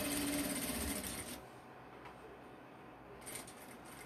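Industrial sewing machine running steadily as it stitches binding onto quilted fabric, then stopping about a second and a half in.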